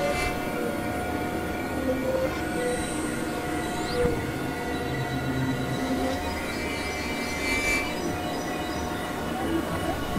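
Experimental electronic drone-noise music: many steady held tones at different pitches layered over a noisy haze, with short blips and a brief rising whistle-like sweep about four seconds in.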